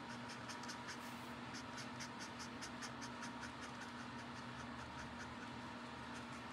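Copic Sketch alcohol marker's brush nib stroking on paper in quick, short, faint scratches, about five a second, as colour is laid down in a flicking motion.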